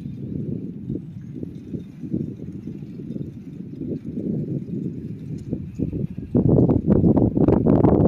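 Sound of a bicycle ride picked up by a handheld phone: wind on the microphone with the rattle and clatter of the bike over the path. About six seconds in it gets louder, with many sharp knocks.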